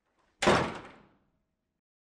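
A heavy door shutting once, a sudden hit about half a second in that dies away quickly.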